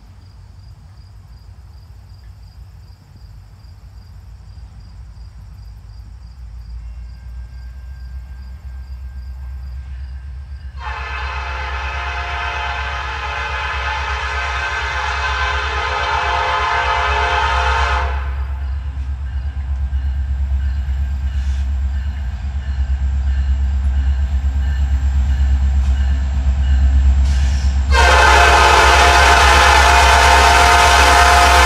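Canadian National SD70M-2 diesel locomotive hauling a freight train toward the listener, its low engine rumble growing steadily louder as it nears. The air horn sounds one long blast of about seven seconds, then a second blast begins near the end.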